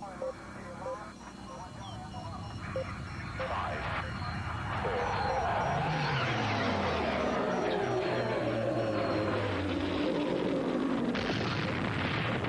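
Cinematic sound effects from a TV commercial: a rumbling, whooshing swell that grows louder about five seconds in and then holds, with sweeps falling in pitch.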